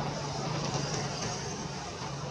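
Steady low engine hum over a hiss of background noise.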